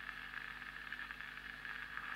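Gramophone record surface noise picked up by a hand-built electro-magnetic pickup after the music has ended: a faint steady hiss with light crackles and clicks as the stylus runs on through the last grooves.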